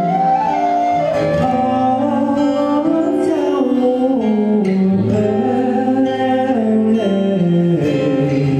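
Male vocalist singing a slow Thai-language ballad live into a handheld microphone, his voice held and gliding between notes, over acoustic guitar accompaniment with a low bass line coming in about halfway through.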